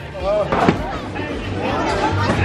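Bowling ball striking the pins with a sharp clatter about two-thirds of a second in, knocking down two pins, amid the general noise of a bowling alley.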